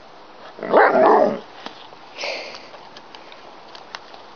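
Alaskan malamute vocalizing on cue, the talking-style sound the breed makes when asked to speak: one loud call lasting under a second, about half a second in, then a shorter, fainter sound about two seconds in.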